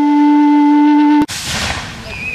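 Native American flute holding one steady note, cut off abruptly just over a second in. A short burst of rushing noise follows and fades.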